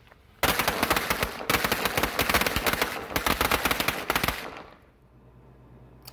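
A string of fifty Shelton Mobster firecrackers going off: a fast run of loud pops at a pretty aggressive pace, starting about half a second in, lasting about four seconds, then trailing off.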